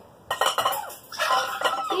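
Glass mixing bowls clinking and knocking on a tabletop, with wooden spoons rattling against the glass, as a filled bowl is set down. The clatter comes in a quick run of strokes in the first second.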